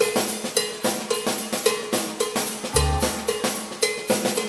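Drum kit playing a steady groove in a live band, with sharp snare strokes about twice a second and a heavy bass drum hit about three seconds in.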